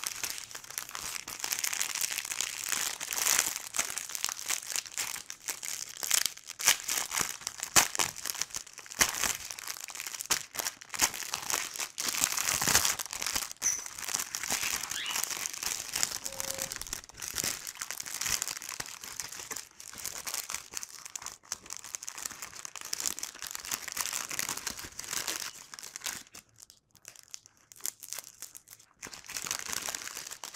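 Clear plastic packaging of a diamond-painting kit crinkling and crackling as it is handled and unwrapped by hand. The sound is irregular and goes on almost without a break, easing off briefly near the end.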